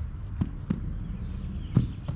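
Three thuds of feet and a soccer ball on artificial turf as a player runs in and plants his foot by the ball. The last thud, near the end, is the loudest. They sit over a low steady rumble.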